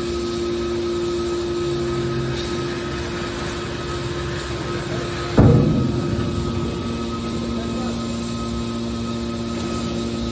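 Hydraulic scrap metal baler running with the steady hum of its hydraulic power unit, and one sudden loud bang about five seconds in as the baler's lid closes down onto the press box. After the bang the hum carries on at a lower pitch.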